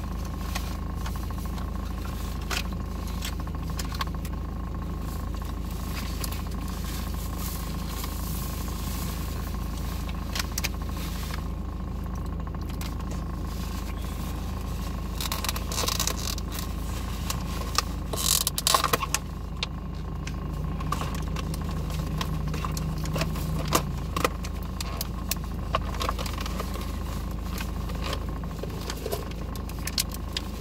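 Steady low hum of a parked car idling, heard from inside the cabin, with scattered clicks and short rustles of napkin and food being handled, busiest about halfway through.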